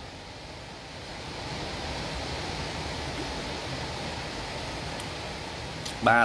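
Steady hiss of background noise with no voice, growing a little louder about a second and a half in.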